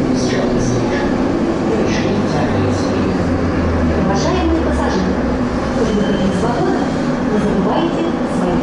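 Inside a Nizhny Novgorod metro car pulling into a station: a steady running rumble with a low motor hum that drops a little in pitch as the train slows to a stop, with voices over it.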